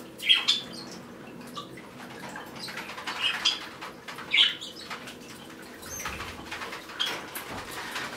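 A few short chirps from small pet birds, scattered through, over light fluttering of wings.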